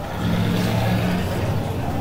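A motor vehicle's engine running nearby, a steady low hum with a slight swell in level early on.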